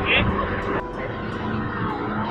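Speedboat engines running steadily under way, heard from inside the covered passenger cabin, with a man's short spoken word at the start.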